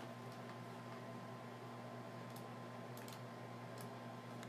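Faint steady electrical hum on the microphone, with a few faint clicks from the computer keyboard and mouse near the end.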